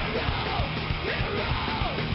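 Rock band playing live and loud: distorted electric guitars and rapid drumming, with vocals over them.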